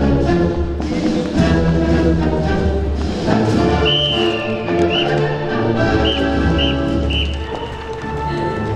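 Band music with brass and sustained low notes, which the drum major conducts to. A few short, high chirps sound over it in the second half.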